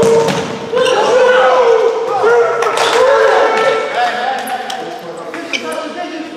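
Players shouting and calling during a futsal goalmouth attack, with sharp thuds of the ball being struck and bouncing on the hall floor.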